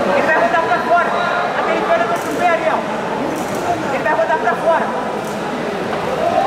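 Raised men's voices shouting, the kind of loud coaching calls heard from the side of a jiu-jitsu mat during a match.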